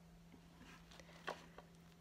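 Near silence: room tone with a faint steady low hum and a few faint soft ticks, one a little louder just after a second in.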